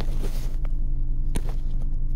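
Steady low rumble of a car cabin on the move, with two sharp clicks about half a second and just over a second in as the phone camera is handled.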